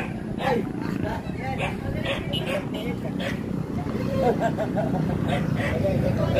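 Indistinct chatter of several people talking at once, over a steady low hum.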